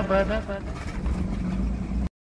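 A man's voice trails off about half a second in, leaving the Maruti 800's small three-cylinder petrol engine running, a steady low hum and rumble that grows louder near the end.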